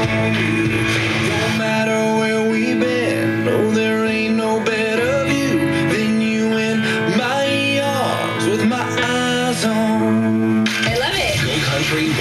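Country music from an FM radio station: a song with singing over guitar, turning brighter and fuller near the end.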